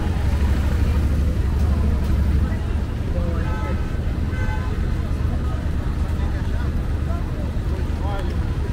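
City street noise: a low rumble of traffic, heaviest in the first couple of seconds, with indistinct voices in the background.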